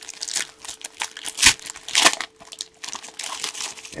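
Foil trading-card pack wrappers crinkling and crackling in the hands as a 2017 Panini Select pack is opened and its cards pulled out, in a run of irregular crackles with a couple of louder ones about halfway.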